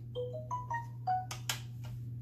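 A short electronic chime: a quick melody of several pure beeping notes at different pitches in the first second, followed by two sharp clicks.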